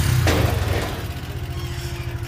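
Motorcycle loader rickshaw's small engine running as the rickshaw moves off loaded with rice sacks, its sound steadily fading.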